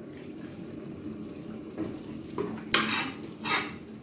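A metal ladle stirring thick, wet mustard-greens saag in a kadai: a soft, steady squelching, then a few sharp scrapes and knocks of the ladle against the pan about two and a half to three and a half seconds in.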